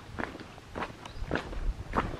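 A hiker's footsteps on a trail, an even walking pace of about two steps a second, four steps in all.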